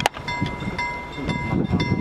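Level-crossing warning bell at a half-barrier crossing ringing about twice a second. Under it is the low rumble of the museum train's carriages rolling away over the rails. There is a sharp click at the very start.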